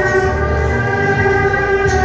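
Instrumental interlude of a song's backing track: sustained held chords over a bass that pulses roughly once a second, with no voice singing.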